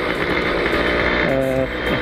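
Suzuki Tornado two-stroke motorcycle running on the move, its engine under a steady rush of riding wind on the microphone. About a second and a half in, a brief steady hum sounds.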